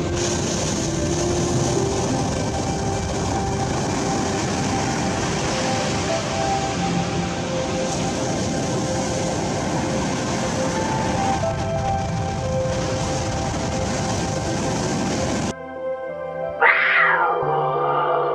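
A steady rushing noise with soft background music, which cuts off suddenly; about a second later a lynx gives one loud yowl that rises steeply in pitch and then falls away.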